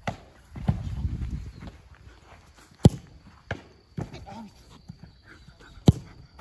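A football is struck hard twice, once near the middle and once at the end, about three seconds apart. Softer thuds come in between as the goalkeeper dives and hits the ground in a rapid-fire diving drill.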